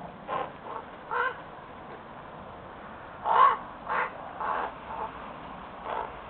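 Crows calling to each other in about eight short, varied croaks and caws, sounding almost like talking parrots. The calls come in two bunches, the loudest about three and a half seconds in.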